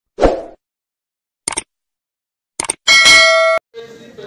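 Subscribe-button animation sound effects: a short thump, then two pairs of sharp mouse clicks, then a bright bell ding that cuts off suddenly.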